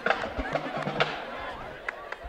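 Spectators' voices and calls from the sideline crowd, mixed together, with a few sharp claps or knocks: one near the start, one about a second in and one near the end.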